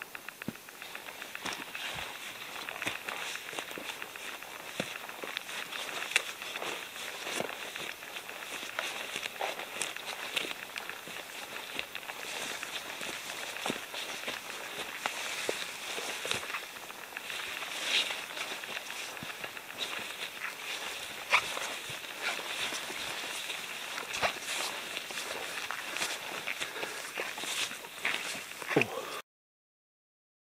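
Footsteps walking through dry dead bracken and forest undergrowth: continuous rustling and crunching underfoot, with frequent small cracks and a few louder snaps of stems and twigs.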